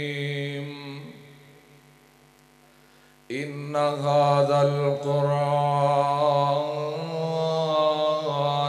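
A man's voice reciting the Quran in a slow, melodic chant through a public-address microphone, holding long notes. It fades out about a second in, pauses for about two seconds, and comes back abruptly about three seconds in on a new long phrase.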